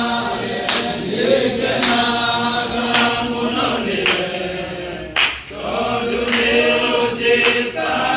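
A group of men singing together unaccompanied, with hand claps keeping a beat about once a second.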